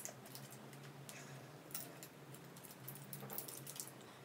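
Faint, scattered light clicks of a folding bike multi-tool's hex key working the brake lever clamp bolt on a handlebar, loosening the lever.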